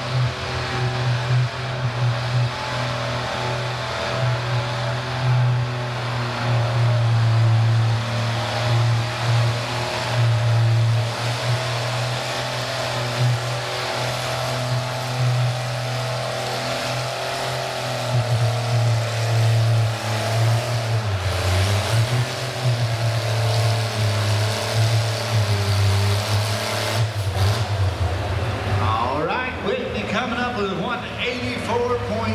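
Farmall 560 tractor's six-cylinder engine running hard under steady load while pulling a weight-transfer sled, its pitch dipping about two-thirds of the way through.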